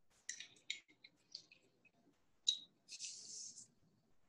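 Hand-held citrus press squeezing a lemon half: a few faint clicks and squelches, a sharper click about two and a half seconds in, then a brief hiss.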